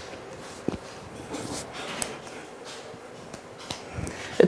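A woman crying quietly, with a few soft sniffs and breaths and two faint clicks.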